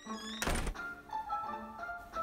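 A single dull thump about half a second in, over soft background music.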